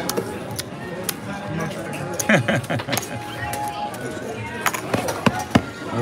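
Casino chips clicking against each other and the felt as the dealer handles bets, with scattered sharp clicks. Background voices and music run underneath.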